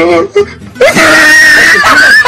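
A person screaming: one long, high-pitched scream, held steady for over a second, starting just under a second in.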